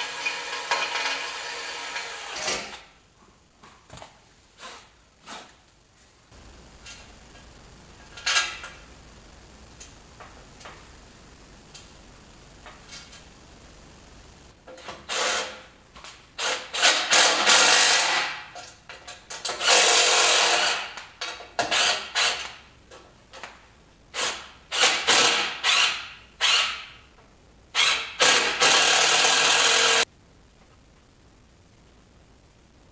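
Cordless drill running for about two and a half seconds as it drills through the metal bumper, then a few small clicks of handling. Over the second half, a series of short, loud bursts of a cordless power tool, several seconds apart and some longer, as the bracket bolts are driven in.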